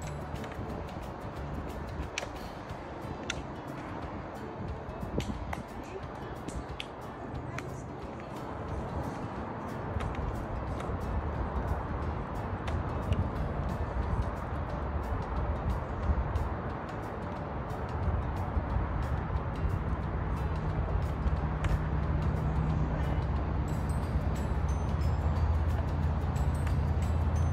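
Background music, getting louder with a heavier bass from about ten seconds in.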